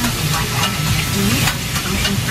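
Chopped food sizzling on a hot flat-top griddle while a metal spatula scrapes and turns it across the steel plate.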